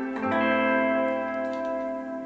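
Electric and acoustic guitars playing a sustained chord, with a new chord struck about a quarter second in and left to ring; the electric guitar is run through effects.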